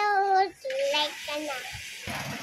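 A high singing voice holds one long note that ends about half a second in, followed by a few short, broken vocal sounds.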